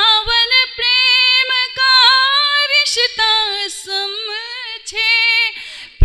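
A woman singing a Hindi geet unaccompanied into a microphone, in long drawn-out phrases with wavering held notes and short breaks between them.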